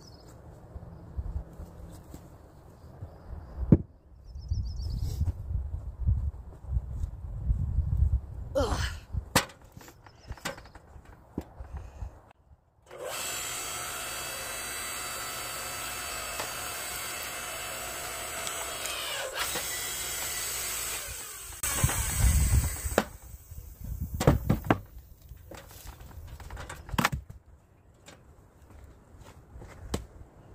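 Electric log splitter working: the motor and hydraulic pump run steadily for about eight seconds as the ram drives a log into the wedge. Before and after that, wood knocks and thuds as logs and split pieces are handled.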